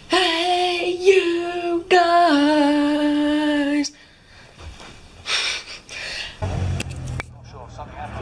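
A boy's voice holding two long sung notes, the second stepping down in pitch, for about four seconds. Then it goes much quieter, with a short hiss and a low rumble near the end.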